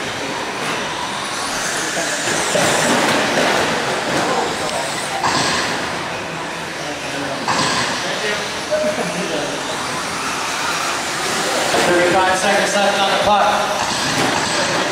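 Radio-controlled short-course trucks racing on a dirt track: a steady wash of small-motor and tyre noise that swells a couple of times as trucks pass, with voices in the background.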